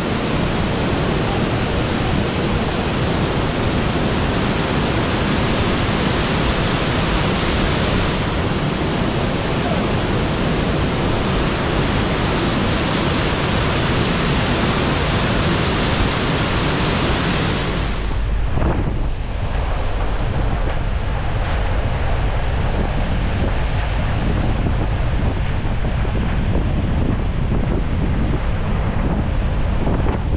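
Large waterfall in full flow: a steady, loud rush of falling water. About eighteen seconds in it cuts off abruptly to a duller low rumble with wind noise on the microphone, from a vehicle driving along a wet road.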